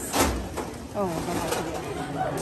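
A short knock about a fifth of a second in, then a woman's short, falling "oh".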